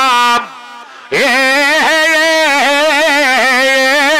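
A sustained, wavering Middle Eastern instrumental melody with a reedy, held tone. It breaks off for under a second near the start and comes back with a quick rising slide into long notes with vibrato.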